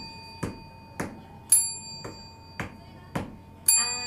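A steady ticking beat of about two clicks a second, with a bright bell ding on every fourth click: the count-in beat of a music jingle.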